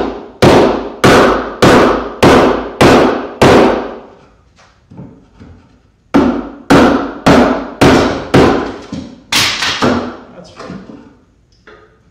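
Wooden mallet striking a timber-framing chisel as it chops into a wooden rafter. Steady blows about 0.6 s apart: a run of about six, a pause of roughly two seconds, then another run of seven or eight that weakens near the end.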